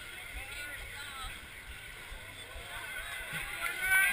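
Faint voices from a crowd and from people in the water, over low sloshing of muddy water as participants wade through a waist-deep pool.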